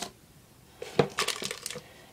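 Small packaged toiletries being handled on a bathroom sink counter: after a quiet start, a sharp click about a second in, then a brief light clatter and rustle of plastic packaging.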